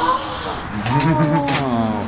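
A man's voice drawn out in one long vowel-like call, lasting over a second and sliding slightly down in pitch at the end.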